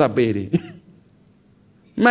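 A man's voice in a sermon trails off, followed by a brief throat clearing about half a second in, then a quiet pause of about a second before speech resumes.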